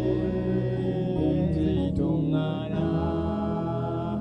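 A man singing a slow melody in long held notes over backing music.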